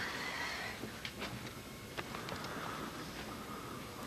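Faint room noise with a few soft knocks, about one and two seconds in.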